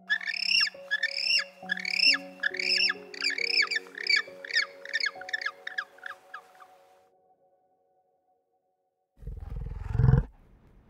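Adélie penguins calling: a run of loud, arching, braying calls, at first a little over one a second, then quicker and fading, stopping about seven seconds in. Near the end a loud, low bison grunt begins.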